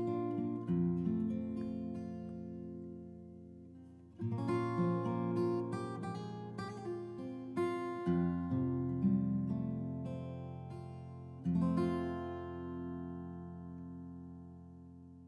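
Background music: acoustic guitar chords strummed and left to ring, with a new chord roughly every four seconds, each dying away, fading toward the end.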